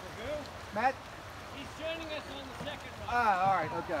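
Voices of a group of kayakers talking and calling out across the water, over the steady wash of the flowing creek. The loudest voice comes about three seconds in.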